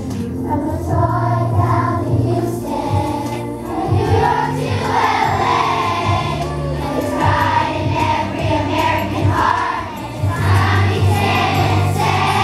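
A large group of schoolchildren singing together as a choir, over a steady low instrumental accompaniment.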